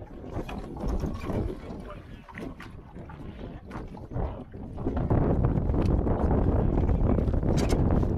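Wind buffeting the microphone and waves against a small aluminium boat, turning loud and steady about five seconds in. Before that, scattered clicks and knocks of handling in the boat.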